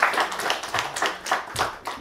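Audience applauding, many hands clapping, dying down toward the end.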